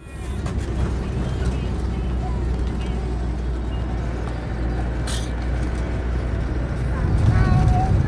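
Road noise inside a Fiat Ducato motorhome while driving: a steady low engine and tyre rumble, with a child's voice near the end.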